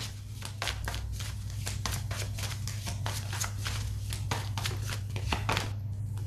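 Tarot cards being shuffled by hand, a quick run of soft papery clicks, over a steady low hum.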